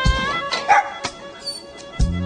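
Background music, with a small terrier giving a short yip about halfway through.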